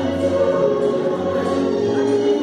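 Choral music: several voices singing held notes together.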